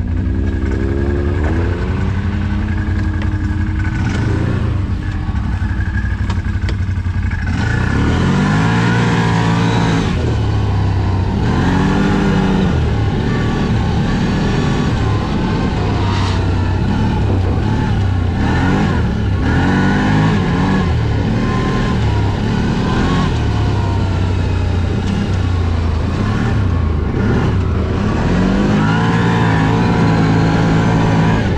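Off-road vehicle engine running under load on a snowy trail, its pitch rising and falling again and again as the throttle is opened and eased off.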